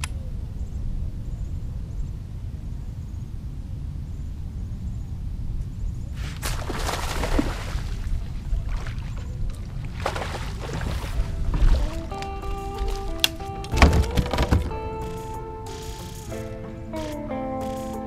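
Wind rumbling on the microphone, then water splashing twice as a hooked bass thrashes at the surface. Instrumental music comes in about twelve seconds in, with a single thump a couple of seconds later.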